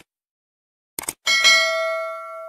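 Subscribe-button sound effect: a quick double click at the start and another about a second in, then a bell chime of several tones that rings on and slowly fades.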